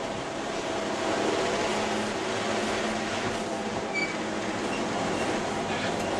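2001 Ford Escort ZX2's 2.0-litre four-cylinder engine running hard at track speed, heard from inside the cabin over steady road and wind noise.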